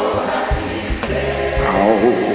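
Old-school gospel song: a choir singing over instrumental accompaniment. The voices thin out around the middle under a held chord, and a voice rises back in near the end.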